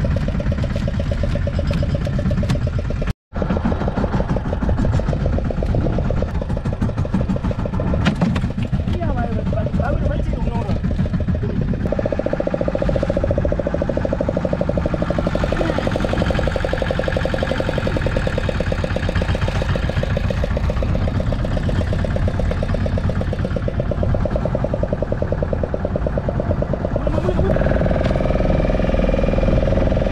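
Fishing boat's engine running steadily with a fast, even beat, under men's voices; the sound drops out for an instant about three seconds in, and a steady hum joins it from about twelve seconds in.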